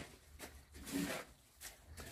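Quiet mouth sounds of a man chewing a cooked snail with his lips closed, with a short low hum about a second in.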